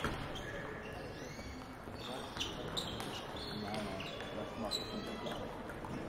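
Table tennis balls clicking sharply and irregularly off tables and bats, mostly from about two seconds in, over a murmur of voices echoing in a large hall.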